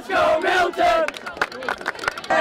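Crowd of student fans yelling and cheering, many voices shouting at once, loudest in the first second, with a few sharp claps.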